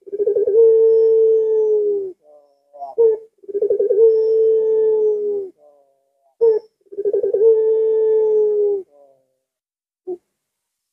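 Puter pelung, a domestic ringneck (Barbary) dove, cooing its long drawn-out call three times. Each coo is about two seconds long: a short note first, then a warbling start, then a note held steady that dips slightly at the end.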